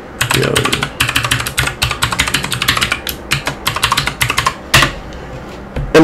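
Typing on a computer keyboard: quick runs of key clicks for about five seconds, with one harder keystroke near the end.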